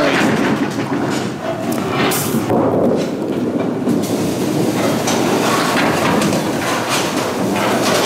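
Candlepin bowling ball rolling down a wooden lane, a steady rumble, with a few knocks in the first couple of seconds.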